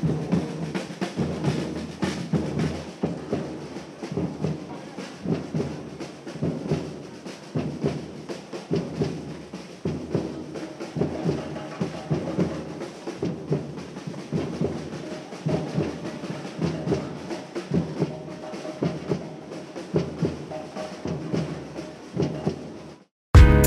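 A street percussion group drumming together: large bass drums struck with mallets, with other drums over them, in a dense, steady rhythm.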